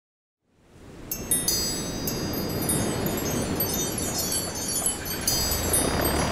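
Shimmering wind chimes, many high tinkling tones ringing and overlapping over a steady rushing noise. The sound fades in out of silence under a second in.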